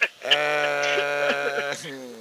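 A man's voice holding one long, steady note for about a second and a half, then trailing off.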